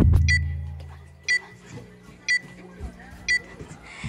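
A deep boom fading away over the first second, then short, high electronic beeps, one about every second, four in all.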